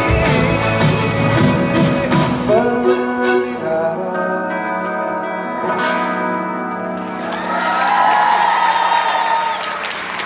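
Live pop song: a male singer with acoustic guitar and band accompaniment, heard with the reverberation of a large hall. A long held note comes near the end.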